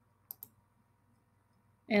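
Two quick computer-mouse clicks, close together, about a third of a second in, over quiet room tone; a voice starts right at the end.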